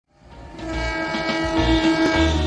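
Train horn sounding a held blast of several tones together, fading in from silence at the start.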